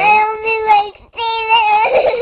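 A young girl crying hard, in two long, drawn-out wails with a short break between them.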